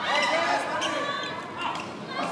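A volleyball being struck during a rally, a few sharp smacks of hands on the ball, with spectators' voices over it.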